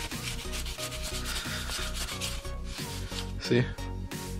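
A sneaker-cleaning wipe scrubbed back and forth against the foam midsole of a Nike Free Run in short repeated strokes. A short louder sound comes about three and a half seconds in.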